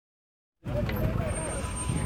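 After a brief silence, people talking over a steady low rumble.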